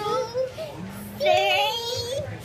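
Young girls singing in long, drawn-out wavering notes, one held at the start and another from just past halfway.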